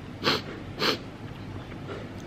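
A man takes two short, sharp breaths through his mouth, about half a second apart, reacting to the burn of very spicy noodles.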